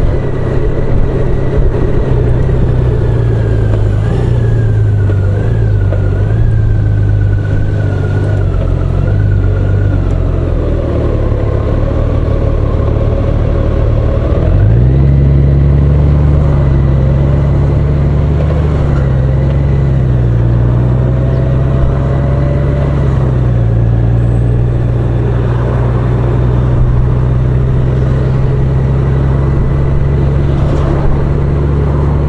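Honda Gold Wing touring motorcycle's engine running steadily under way, with wind and road noise. About halfway through the engine note steps up sharply and then holds at the higher pitch.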